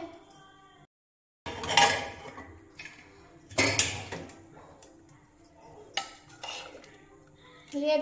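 Steel cookware clattering on a gas stove: a handful of separate metal clanks and scrapes of pots, lids and a spoon, a couple of seconds apart.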